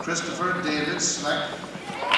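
Indistinct voices with no clear words.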